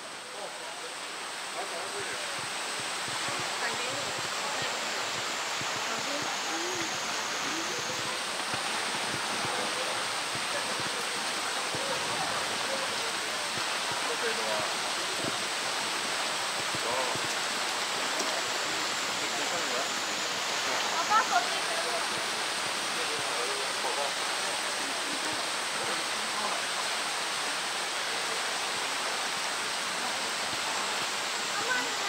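Steady rushing hiss of water, even and unbroken, with faint distant voices mixed in and a couple of brief louder sounds about two-thirds of the way through.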